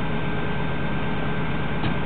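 PKP SU45 diesel locomotive idling at a standstill, a steady engine rumble with a fine low throb.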